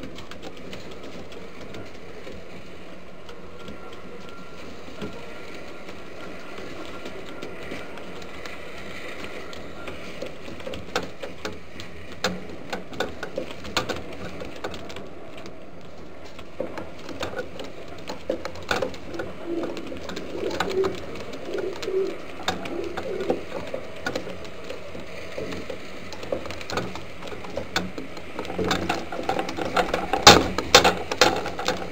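Homing pigeons cooing in the loft, with a run of short low coos about two-thirds of the way in. Scattered clicks and taps of the birds moving about grow busier near the end as more birds crowd in.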